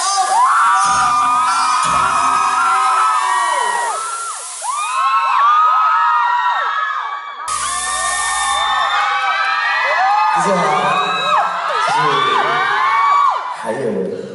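A large crowd of fans screaming and cheering, many high voices overlapping.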